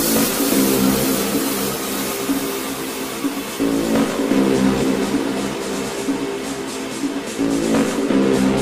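Tech-house/techno DJ mix: a repeating synth riff in phrases of about four seconds, with the bass coming in heavier at the turn of each phrase. A hissy high layer is strongest at the start and thins out.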